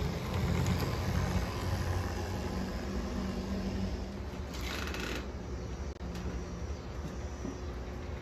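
HO scale model train, a diesel pulling coal hopper cars, rolling along the track in a low steady rumble with a faint motor hum. A brief hiss comes about five seconds in.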